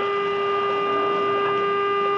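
Car horn held in one long, steady blast on a single pitch, sounded as a warning at a car running a red light.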